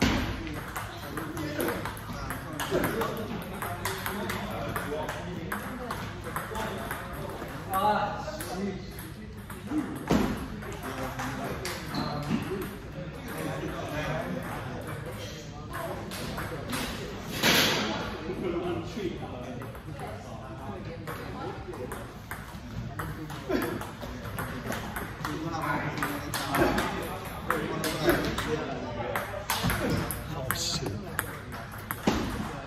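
Table tennis ball being struck back and forth in rallies: quick sharp ticks of the ball off the paddles and its bounces on the table, with short pauses between points.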